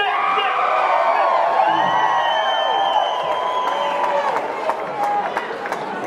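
Theatre audience cheering and shouting, with several long whistles rising over the crowd noise.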